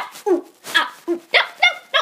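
A dog barking and yipping in a quick run of short calls, about four a second, each falling in pitch.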